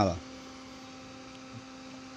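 Steady mains hum from a homemade transistor power amplifier, powered up and idling with no input signal.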